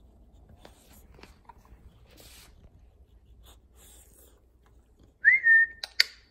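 A person whistles once to call a dog: a short, loud note that rises quickly and then holds steady for about half a second near the end. Before it there are only faint scattered rustles.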